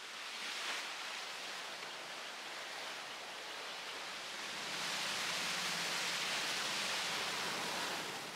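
Steady rushing and splashing of canal water churned by a passing passenger boat's wake, swelling louder about halfway through. No engine is heard.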